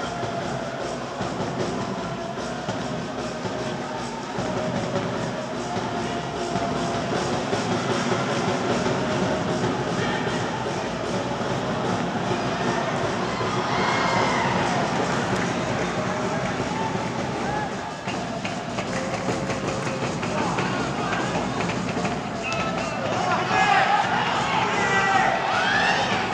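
Football broadcast sound: a voice, most likely the match commentator, over a steady background with music-like tones. The voice grows livelier about midway and again near the end as attacks develop.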